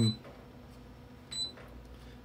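Low room noise with one short, high beep about one and a half seconds in.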